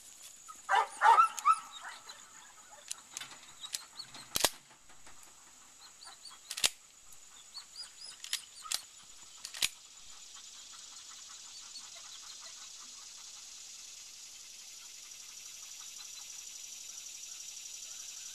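A Labrador retriever gives a few short yelps about a second in, as it is sent on the retrieve, followed by several sharp clicks spread over the next few seconds. Birds chirp, and from about halfway a steady high-pitched drone fills the background.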